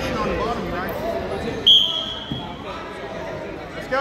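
Background chatter of many voices in a gym, with one short, loud, steady whistle blast about a second and a half in: a referee's whistle starting the wrestlers from the kneeling referee's position.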